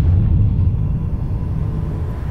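A deep, steady bass rumble, the sound effect under an edited title card, fading slightly.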